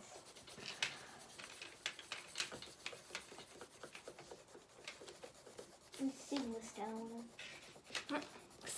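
Coloured pencil scratching faintly on sketchbook paper in quick, short shading strokes. A voice murmurs briefly about six seconds in.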